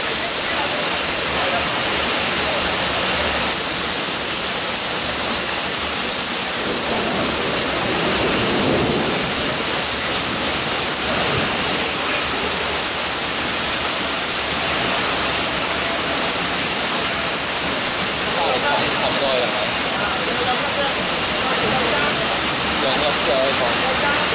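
Steady, loud rushing roar of foundry equipment filling a casting shop where molten stainless steel is being poured into sand moulds, with faint voices underneath.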